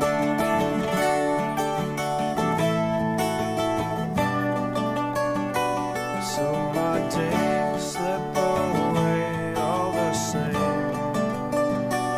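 Live acoustic band music: an instrumental break with a mandolin playing over a strummed acoustic guitar.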